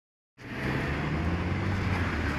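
Street traffic noise: a steady low rumble of vehicle engines, starting about a third of a second in.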